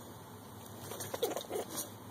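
Soft, irregular rustling of a rabbit nest's fur and hay lining as a hand parts it over the kits, with a cluster of short rustles in the second half.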